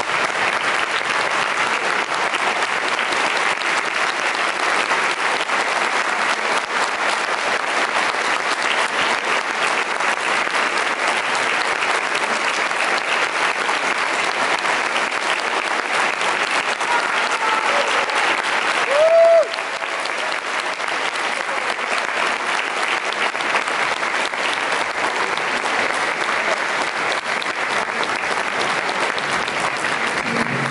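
Sustained audience applause, a dense, steady clatter of many hands clapping. About two-thirds through, a brief loud pitched sound rises and is held for a moment above the clapping.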